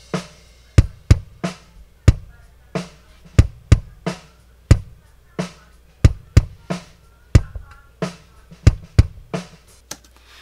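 Kick drum recorded by an AKG D112 microphone inside the drum, played back solo: a run of sharp kick hits in an uneven groove, about two a second. The sound has a little bite in the mid-range, with not too much low end and not too much high end.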